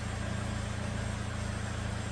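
2009 Chevrolet Malibu Hybrid's 2.4-litre four-cylinder engine idling steadily at about 830 rpm, an even low hum.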